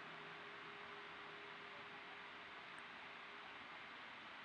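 Near silence: a faint steady hiss with a faint steady hum, and no handling sounds.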